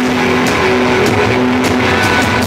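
A live rock band playing an instrumental passage: loud held electric-guitar notes droning over bass, with a couple of drum and cymbal hits.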